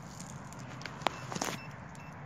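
A hand digging tool working in dirt and dry leaves around a freshly dug plug: faint scraping with one sharp click about a second in and a few lighter clicks just after.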